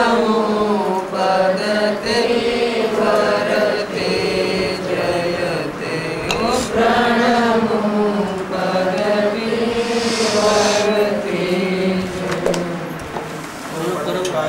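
Voices chanting a devotional chant in long, drawn-out notes that rise and fall.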